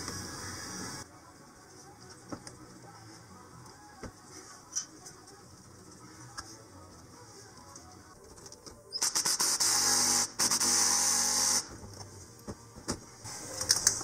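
Intercooler retaining bolts being run back in with a tool: faint clicks of handling, then about nine seconds in a loud, even, fast-ticking run of the tool for about two and a half seconds that stops abruptly.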